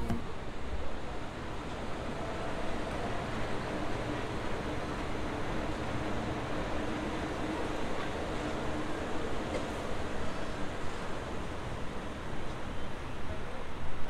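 Walt Disney World monorail train running along its elevated beamway overhead: a steady rush of noise with a faint low hum in the middle.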